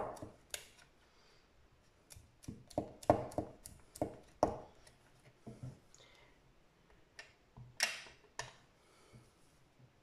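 Scattered light taps and clicks of a clear acrylic stamp block being pressed, lifted and set down on paper over a cutting mat, along with a plastic ink pad being handled. A brief scrape comes about eight seconds in.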